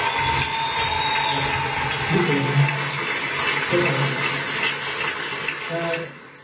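Steady rushing outdoor noise of water at the shore, with a person's voice heard briefly a few times.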